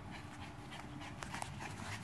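A dog panting quietly, with a few light clicks in the second half.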